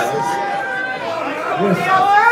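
Several people talking at once: overlapping chatter with no single clear speaker.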